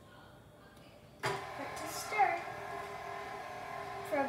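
KitchenAid tilt-head stand mixer switched on about a second in, its motor then running steadily with a constant whine while it mixes wet batter ingredients (milk, butter, yogurt, egg, vanilla). A brief voice sounds over it about two seconds in.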